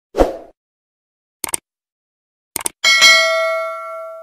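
Subscribe-button animation sound effects: a short pop, two quick double mouse clicks about a second apart, then a bright notification-bell ding that rings on and fades.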